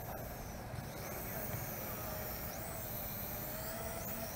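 Eachine E33 toy quadcopter's motors and propellers whirring faintly and steadily, the pitch wavering as it is flown in close.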